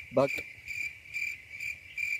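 A cricket chirping: a steady high-pitched trill that pulses a few times a second, with one short vocal sound just after the start.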